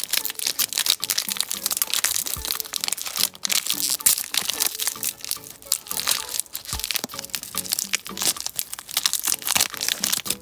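Wafer-bar wrapper crinkling and crackling as hands tear it open and peel it back, a dense run of small crackles throughout. Soft background music plays underneath.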